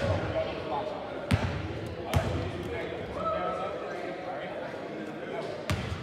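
A basketball bouncing on a hardwood gym floor four times at uneven intervals, each bounce echoing in the hall, over a steady murmur of crowd chatter. A brief squeak about halfway through.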